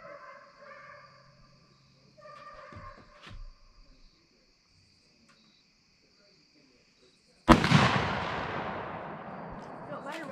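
A single .30-30 rifle shot about three-quarters of the way in, its report echoing and dying away over a couple of seconds.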